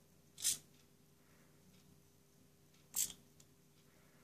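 A small 3D-printed biped robot moving on its blue micro servos: two short bursts of movement noise, about two and a half seconds apart.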